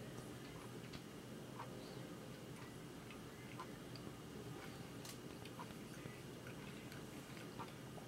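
A person chewing a mouthful of cake, faint, with soft irregular mouth clicks about twice a second over a low steady hum.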